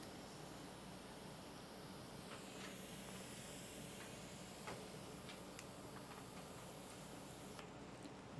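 Quiet room tone: a faint steady low hum with a few faint scattered ticks.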